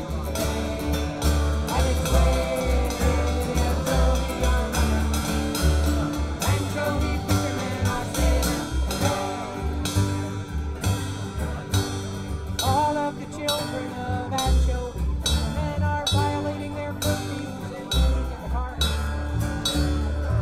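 A small live band playing an up-tempo tune: two acoustic guitars strumming over a plucked upright double bass and a drum kit with cymbals keeping a steady beat.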